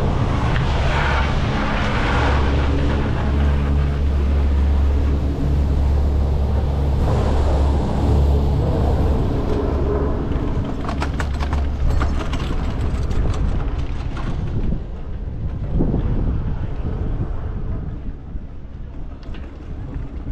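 Chairlift machinery running with a steady low hum as the chair is boarded and carried out of the terminal, with a short clatter of clicks about eleven to thirteen seconds in. The hum then fades under wind noise as the chair climbs.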